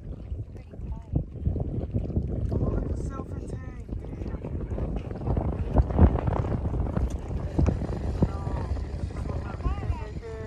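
Wind buffeting the microphone: a low, gusty rumble that swells and falls, loudest about six seconds in. Faint voices come and go beneath it.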